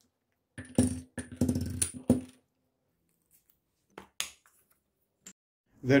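Metallic clinks and clicks of 18650 lithium-ion cells and the aluminium flashlight body being handled. There is a cluster of clinks with a short ring in the first two seconds, then a few lighter clicks later.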